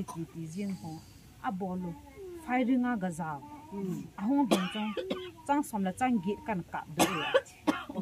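A woman speaking animatedly in a local language, with two louder, rougher bursts of voice about four and a half and seven seconds in.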